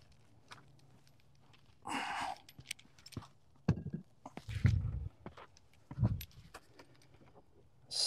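Concrete cinder block scraped across a beehive's sheet-metal outer cover and lifted off, followed by a few dull thumps and small handling clicks.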